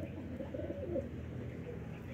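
Domestic pigeons cooing, a faint, low, wavering coo.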